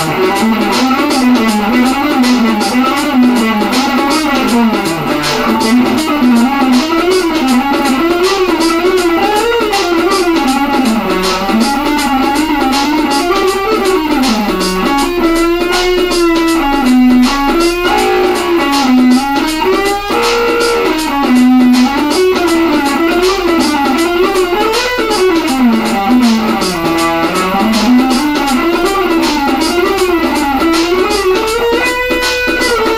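Electric guitar playing fast, unbroken jazz-fusion runs that climb and fall through scales, with a wavering vibrato note about halfway through and a few briefly held notes after it.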